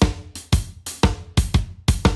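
Dance-music drum loop and bass line playing back, layered with acoustic drum-kit samples from Addictive Drums 2. A kick lands on every beat, about two a second, with snare and hi-hat hits over a sustained bass.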